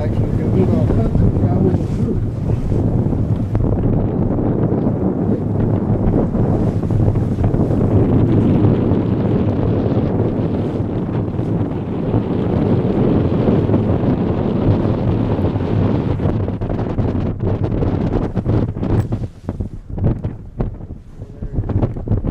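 Wind buffeting the microphone, a dense steady rush with a low hum underneath. Near the end it turns gusty and choppy, dropping and surging.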